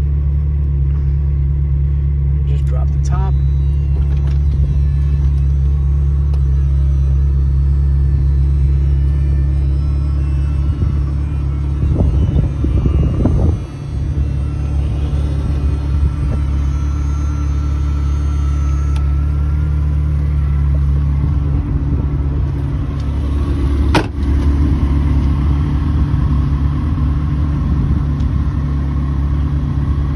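Ferrari 360 Spider's 3.6-litre V8 idling steadily, with a sharp knock late on.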